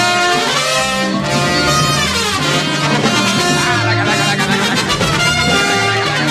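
An orchestra with prominent brass playing loudly, with some falling runs in the melody.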